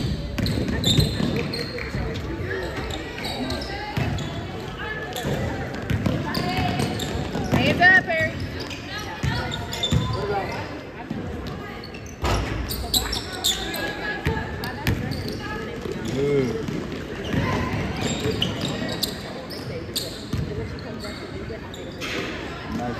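A basketball game on a gym's hardwood court: the ball bouncing in repeated sharp knocks, with players' and spectators' voices talking indistinctly in the echoing hall.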